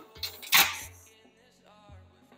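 A single sharp knock as a tempered glass PC side panel is lifted off a wooden workbench, about half a second in, with background electronic music under it.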